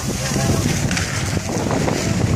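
Wind buffeting the microphone of a handheld phone during a fast downhill ski run, a steady rushing noise with a few faint voices in it.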